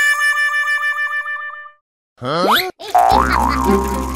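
Cartoon sound effects and music. A warbling, wavering tone fades out, followed by a brief silence and a quick rising glide. After that, background music with a steady low drone returns.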